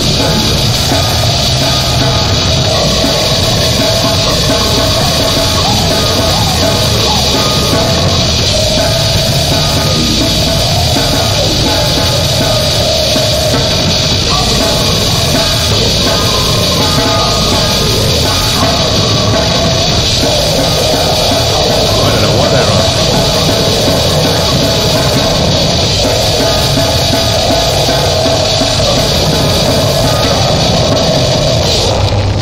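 Extreme metal track with a goregrind edge, heavily distorted and dense, playing at a constant loud level.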